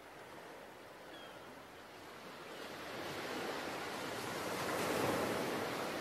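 Ocean surf, a steady rushing wash of waves that fades in from silence and grows louder.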